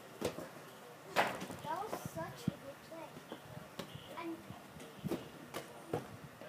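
Soccer ball being kicked around a backyard: a few sharp thuds, the loudest about a second in, among children's voices and shouts.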